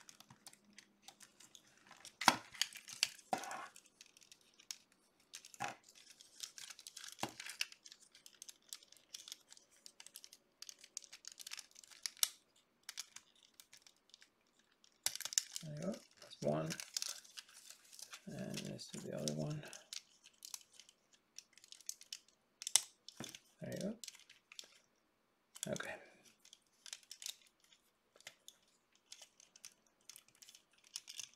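Hard plastic parts of a Sentinel 1/12-scale VR-052T Ray action figure being handled: scattered clicks, taps and short scrapes as pieces are fitted together and joints are moved.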